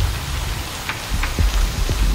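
Electronic dance music in a thinner passage of the mix: a hissing, rain-like noise wash with scattered short clicks over a lighter bass, which fills back in about a second in.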